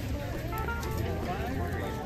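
Busy market background: indistinct voices of people nearby, with faint music, over a steady low rumble.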